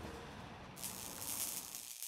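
Faint background hiss with no distinct event, a higher hiss joining a little under a second in.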